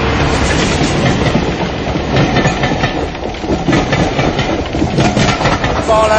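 A rail vehicle running along the track: a steady low rumble with irregular clattering and clanks from the wheels on the rails.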